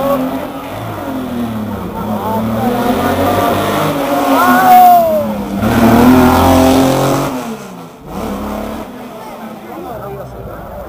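Classic rally car's engine revving hard as the car accelerates past close by. Its pitch rises to a peak about five seconds in, then falls as the car goes by, and the sound fades after about seven and a half seconds.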